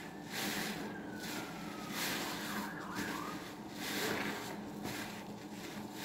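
A soap-laden sponge squeezed and kneaded repeatedly in thick suds, giving wet squelches about one or two a second. A faint falling tone is heard behind it in the first two seconds.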